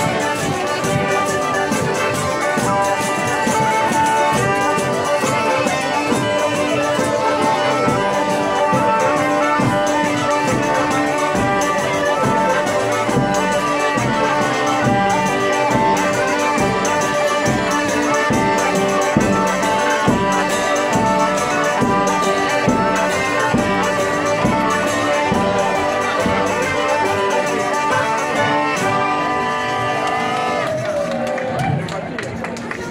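Southern Italian folk band playing a lively tune: a diatonic button accordion (organetto) carries the melody over a steady, even beat from hand drums.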